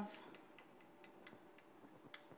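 Faint chalk on a blackboard: light ticks and taps of the chalk as words are written.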